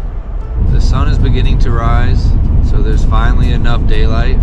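Steady low rumble of a moving car heard from inside the cabin, coming in loudly about half a second in as soft music fades. A person's voice, rising and falling in pitch, runs over it from about a second in.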